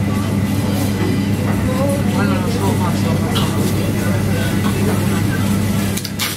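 Busy indoor ambience: a steady low machine hum under indistinct background chatter of voices.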